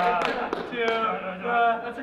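Performers' voices on a stage: short stretches of speech, too unclear for words.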